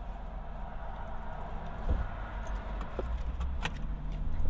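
Low steady hum of a vehicle idling, with a dull thump about two seconds in and a few light clicks and rattles.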